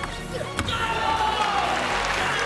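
A single sharp table tennis ball strike about half a second in, then a player's long, loud shout that slowly falls in pitch, over background music.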